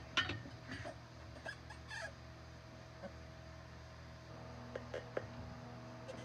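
Manual mini tire changer's metal bar levering a small knobby tire's bead over its rim: a handful of sharp clicks and knocks, loudest just after the start and a few more near the end, over a steady low hum.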